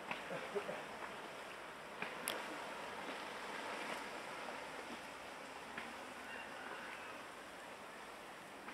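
Steady outdoor background noise: a soft, even hiss with a few faint clicks, the sharpest about two seconds in.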